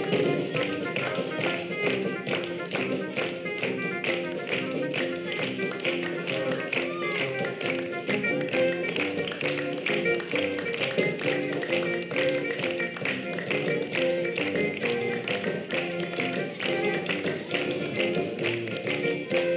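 A group of children clapping together in a steady rhythm along to a song's music.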